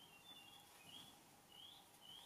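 Near silence with several faint, short rising chirps from a bird in the background.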